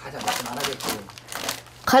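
Plastic snack packaging crinkling in quick, irregular bursts as it is rummaged through and handled.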